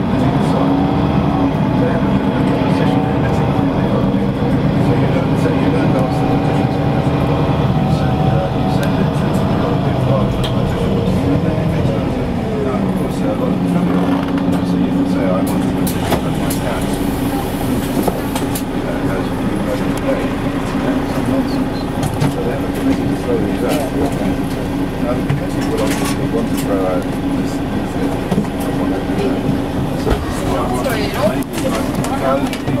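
City street sound: a vehicle engine humming steadily, with people's voices mixed in.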